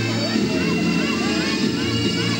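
Bagpipes playing, a steady drone sounding under the chanter's melody, with voices in the crowd over it.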